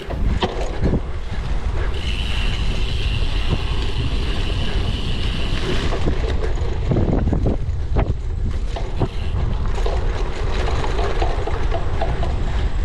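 Wind buffeting the microphone of a bike-mounted camera, with the rattle and knocks of a cyclocross bike jolting over a bumpy grass course. A high steady whir runs from about two to six seconds in.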